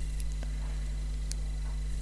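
Steady low electrical hum with a few faint light ticks of wooden knitting needles as stitches are knitted.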